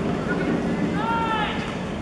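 Football players shouting on the pitch: one short, loud call about a second in, over steady outdoor background noise.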